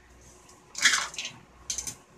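Plastic pieces of a toy burger stacking puzzle being handled and fitted together: a short scraping rustle about a second in, then a few quick light clicks near the end.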